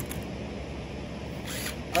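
A few faint clicks and clinks of tools being handled on a table as a cordless impact driver is picked up, over steady low background noise.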